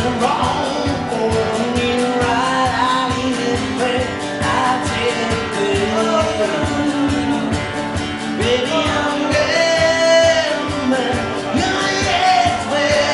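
A man singing to his own steadily strummed acoustic guitar, live. His voice climbs to a louder, held line near the ten-second mark.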